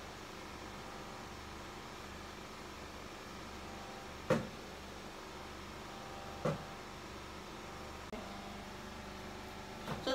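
Steady low background hum with two short knocks, the first about four seconds in and the second, softer, about two seconds later.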